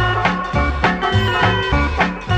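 Background music with a bouncy bass line and a steady, regular beat.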